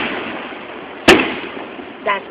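Aerial firework shells bursting. The tail of one bang fades at the start, then another sharp bang comes about a second in and dies away.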